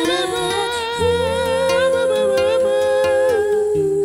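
A singer holds long sung notes with vibrato over a nylon-string classical guitar's plucked accompaniment; the longest note is held for about two seconds and then steps down in pitch.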